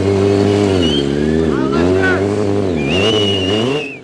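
Stunt motorcycle engine revving up and down again and again as the rider throws it into wheelies and stoppies, the pitch dropping and climbing several times.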